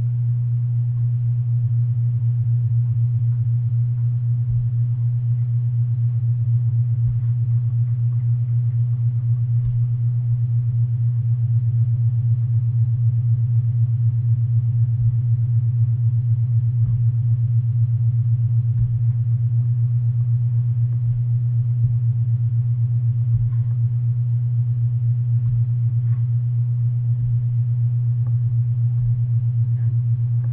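A loud, steady low-pitched hum on one unchanging tone, with a few faint knocks scattered through it.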